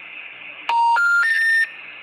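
Telephone special information tone: three short steady beeps stepping up in pitch, over faint phone-line hiss. This is the tone that opens a disconnected-number intercept message.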